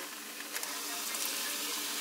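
Breaded crappie fillets frying in hot oil in a small pan: a steady sizzle that grows slightly louder.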